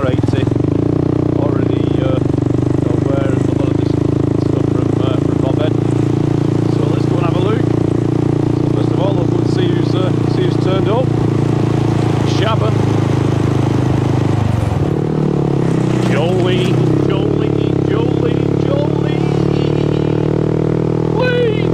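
Honda Monkey motorcycle's small single-cylinder engine running steadily under way, heard from the bike itself. About fifteen seconds in, the engine note drops and then settles at a new pitch.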